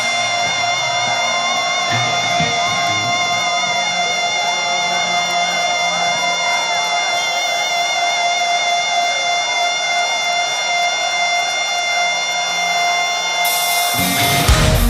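Electric lead guitar holding one long sustained note with vibrato, with faint crowd cheering and whistles underneath. Just at the end, the full heavy-metal band crashes in loudly.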